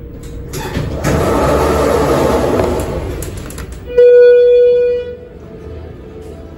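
Elevator's single-slide door opening with a rush of noise and clicks. About four seconds in comes a loud electronic tone, held for about a second, then cut off.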